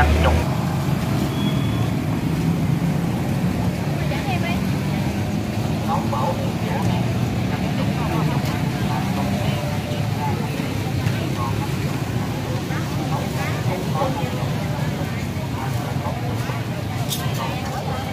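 Busy street ambience: scattered chatter of many people over a steady low rumble of road traffic and motorbikes. A few sharp clinks near the end.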